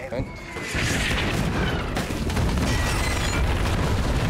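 A loud, deep rumbling boom from a TV series soundtrack swells about a second in and holds steady, a dense rush of low noise.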